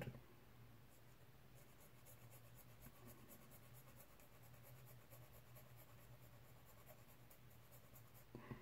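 Faint, rapid scratching strokes of a small hand tool worked back and forth on a miniature model part, about four or five strokes a second, starting about a second in, over a faint low hum.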